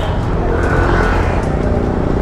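Yamaha NMAX scooter's single-cylinder engine running amid street traffic, with a car passing close by.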